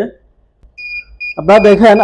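Dahua DVR's built-in buzzer beeping: a high electronic beep about a second in, broken once, then carrying on faintly under a man's voice. This beeping is typical of the DVR's alarm when no hard disk is detected.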